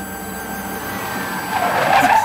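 A hatchback car drives up and brakes to a stop, its tyre noise swelling and loudest near the end, over a steady held note of background music.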